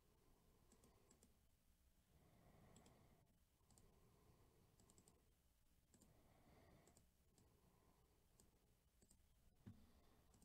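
Near silence with faint computer mouse clicks, singly and in small quick clusters, and a soft thump near the end.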